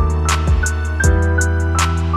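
Instrumental trap beat at 80 BPM in E minor: a sad, melodic piano-led line of held notes over deep sustained bass, with fast hi-hat ticks and a clap or snare hit about every second and a half.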